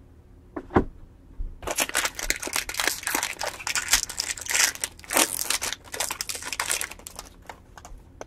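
A 2021 Topps jumbo baseball-card pack's foil wrapper being torn open and crinkled by hand: dense crackling for about five seconds, after a single knock just under a second in.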